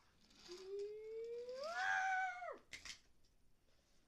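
A single long wordless vocal sound that rises slowly in pitch, holds, then drops away, followed by a brief clatter.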